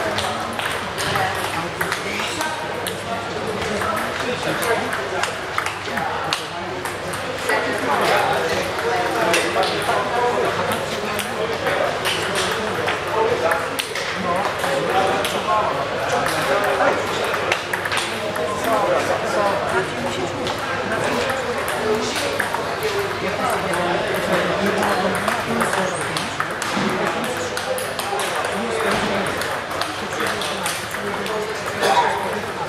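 Table tennis balls clicking off bats and tables in rallies, the hits coming from several tables at once, over a steady murmur of voices.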